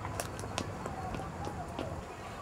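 Footsteps on stone park steps: a few irregular sharp clicks over a steady low outdoor rumble.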